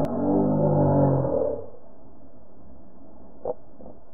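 A deep ringing tone of several steady pitches, fading out about a second and a half in, then a steady muffled rustle with a single short click near the end.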